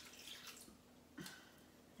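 Faint trickle of juice being poured into a Thermomix's stainless-steel mixing bowl, with a soft knock a little past a second in.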